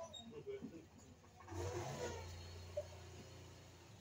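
A small child's faint voice at the start, then a vehicle engine swells up suddenly about a second and a half in with a steady low hum, and slowly fades away.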